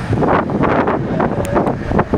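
Wind buffeting the microphone in loud, irregular gusts.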